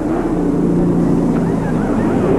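NASCAR Winston Cup stock cars' V8 engines running at low speed as a steady, even drone.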